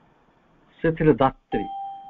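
A single clear chime tone rings out about one and a half seconds in, holding one pitch and fading away in under a second, just after a man says a short word.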